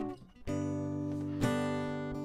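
Acoustic guitar strumming chords. A chord dies away briefly, then a new chord is strummed about half a second in and another about a second later, each ringing on.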